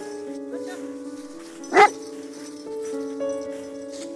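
A Bernese mountain dog barks once, loudly, about two seconds in. Background music of held notes plays throughout.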